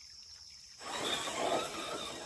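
Radio-controlled crawler truck with a brushed motor driving up a rocky creek bank, tyres scrabbling over loose stones. It is faint at first, then a rough, noisy scrabble starts about a second in.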